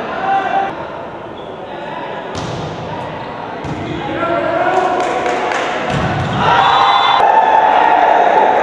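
A volleyball rally in a gymnasium: the ball is struck several times with sharp thuds, while players and spectators shout, their voices swelling into loud cheering over the second half as the point is won.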